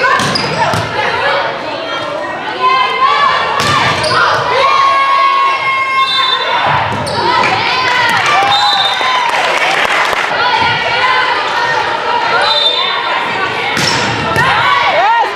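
Volleyball being played in a gymnasium: players and spectators calling and shouting, with several sharp slaps of the ball being struck, echoing in the hall.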